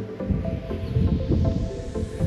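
Background music with steady held tones, over a low, uneven rumble.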